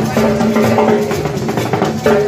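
Live Latin street band music: drums keep a busy beat under held melody notes.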